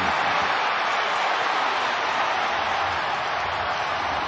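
Stadium crowd cheering steadily after a home-team touchdown.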